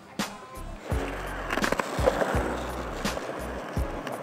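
Skateboard wheels rolling over concrete in a steady rumble, under background music.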